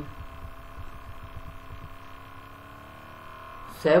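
Steady background hum with several faint steady tones, in a pause between spoken words; a man's voice starts again near the end.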